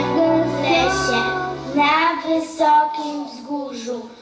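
Children singing a song with instrumental accompaniment; about halfway through, the accompaniment's low bass drops out and the voices carry on more thinly.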